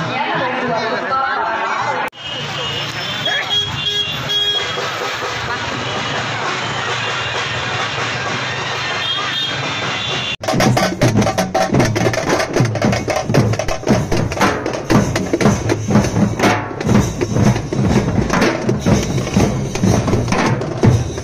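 Dense noise of a large crowd with voices and some music. About ten seconds in, a sudden cut leads to a drum troupe beating large barrel drums in a fast, loud, steady rhythm.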